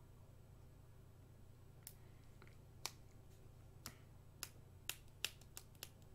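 Near silence over a low hum, broken by faint, sharp, separate clicks that begin about two seconds in and come faster near the end.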